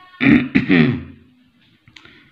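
A man clearing his throat: two short bursts within the first second.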